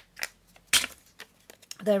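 Ink pad dabbed against paper ring reinforcers on a table: a few light taps, with one sharper knock about three-quarters of a second in.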